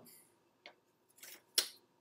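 Plastic miniature-kit sprue being handled: a few faint, light clicks and a brief rustle, with the sharpest click near the end.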